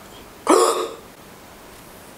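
A man's single short, hiccup-like vocal yelp about half a second in, rising in pitch at its start.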